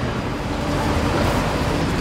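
Steady city street traffic noise with no distinct events.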